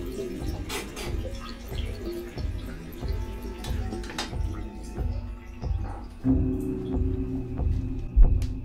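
Horror film score: a low, steady droning hum, with a louder held tone swelling in about six seconds in, over scattered small clicks and drips of water.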